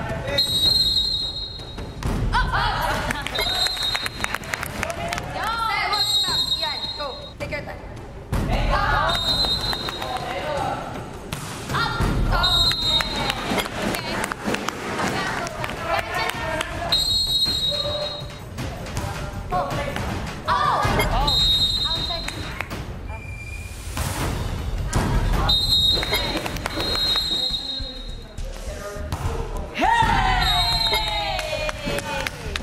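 Sitting-volleyball rallies in a gym: the volleyball is struck by hand and thumps on the wooden floor again and again, with players shouting and calling between points. Short high tones recur every few seconds.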